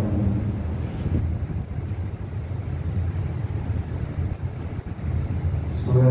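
Steady low background rumble with no voice over it.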